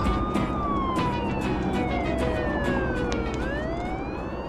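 Police car siren in a slow wail: one long falling sweep over about three seconds, then starting to rise again near the end, heard from inside a following car over steady road noise.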